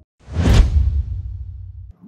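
A whoosh transition sound effect over a deep rumble: it swells suddenly about a quarter second in, peaks quickly, then the rumble dies away and cuts off just before the end.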